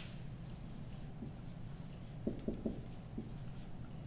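Dry-erase marker writing on a whiteboard: a few short, faint strokes, most of them about two to three seconds in, over a low steady hum.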